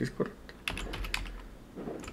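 Computer keyboard keys clicking as terminal commands are typed: a handful of separate keystrokes, unevenly spaced.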